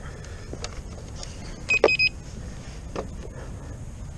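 King Song S18 electric unicycle rolling over a gravel trail, with a steady low rumble from its 18-inch tyre on the stones. About two seconds in there is a sharp knock and two short high beeps in quick succession.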